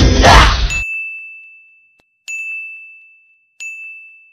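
A bright, single-pitched ding chime struck three times, about a second and a half apart, each ringing out and fading. The first ding sounds over the tail of loud music and shouting, which cuts off suddenly about a second in.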